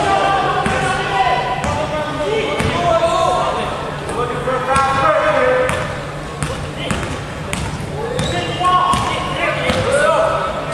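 A basketball bouncing on a hardwood gym floor at irregular intervals, mixed with players' shouted calls.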